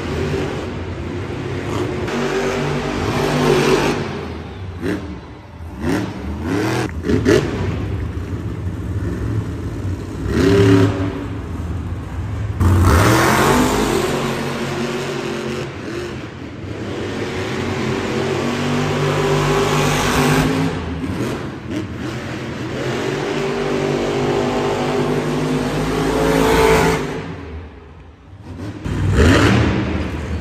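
Monster truck engines, supercharged V8s, revving hard and dropping back again and again as the trucks drive the arena track and hit ramps. There is a brief lull near the end, then another sharp rev.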